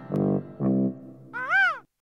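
Outro jingle: two short musical chords, then a single gull cry that rises and falls in pitch, after which the sound cuts off abruptly.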